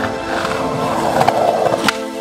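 Skateboard wheels rolling over concrete, then the sharp crack of the tail popping an ollie near the end, over background music.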